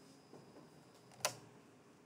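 Quiet room with faint pen strokes on paper, and a single sharp click just past a second in.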